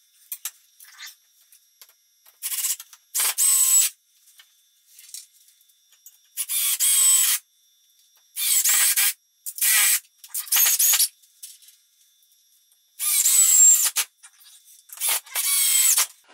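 Cordless drill or driver running in short bursts of under a second each, about eight times with pauses between, driving screws to fasten the rod-storage rails to the wooden strip on the wall.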